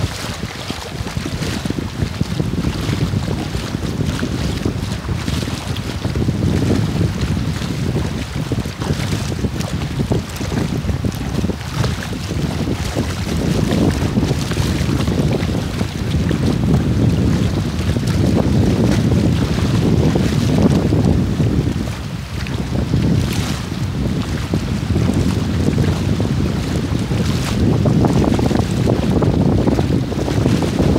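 Wind rumbling on the microphone over rushing, splashing water, heard aboard a small watercraft moving over shallow sea. The rumble swells and eases without stopping.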